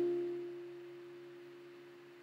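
Acoustic guitar's last strummed chord ringing out and fading away. One higher note lasts longest.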